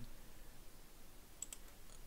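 Faint clicking at a computer: a few small clicks in the second half over quiet room tone.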